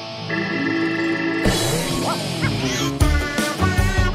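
Children's cartoon soundtrack music from a TV broadcast. A held chord runs for about a second and a half, then come a couple of rising, sliding comic sound effects, and from about three seconds in a bouncy tune with a steady beat.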